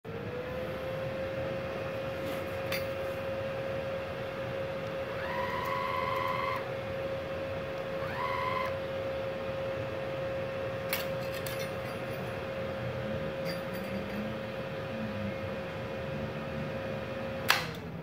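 A switched-on inverter MIG welder giving a steady electronic whine, with two brief higher whines around five and eight seconds in. Near the end a sharp click, the loudest sound, and the whine cuts off.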